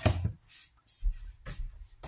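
A few faint, short knocks and rustles from items being handled, in a quiet room.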